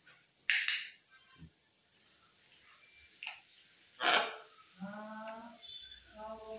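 Blue-and-gold macaw giving short harsh squawks: two quick ones about half a second in and a louder, longer one about four seconds in, followed by a short pitched vocal sound near the end.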